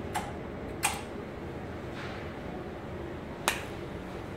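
A capacitor-discharge welding machine for mineral-insulated cable is fired repeatedly, giving three sharp snaps a second or more apart, with the second the loudest. A steady hum runs underneath.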